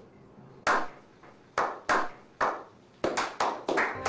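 Slow hand clapping: single claps spaced about a second apart, quickening to several a second near the end.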